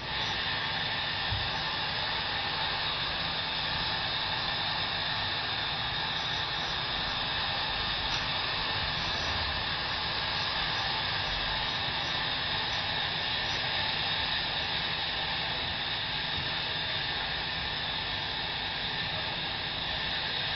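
Steady rush of muddy floodwater pouring over a diversion weir and its gate structure. It is played back from a recording, and starts abruptly.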